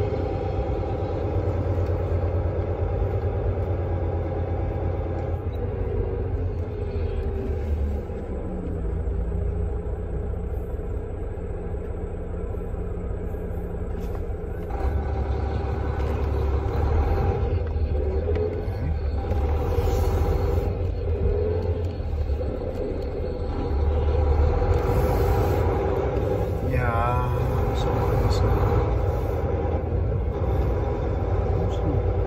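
Semi truck's diesel engine running at low speed, heard from inside the cab, a steady low rumble. The engine note drops at about seven seconds and picks up again about halfway through.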